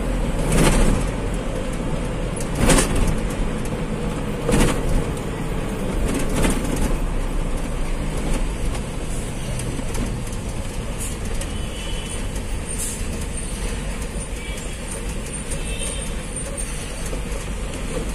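Truck engine and road noise heard from inside the cab as the truck slows. A few sharp knocks or rattles come in the first several seconds.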